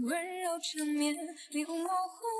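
Background music: a woman's singing voice carrying a song melody in a few held notes, with little else behind it.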